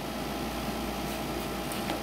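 Electric fan running with a steady whir.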